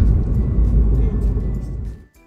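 Loud, low rumble of a car in motion on a highway: road and wind noise, with faint background music underneath. The rumble cuts off abruptly at the end.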